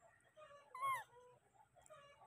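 Baby macaque giving one short, high call that falls in pitch, about a second in, with fainter squeaks around it.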